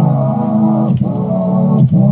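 Lofiatron, a circuit-bent cassette-tape sampler, playing a sustained low pitched note recorded on tape while a button is held. The note breaks off with a click and starts again about a second in, and again near the end, as buttons are pressed.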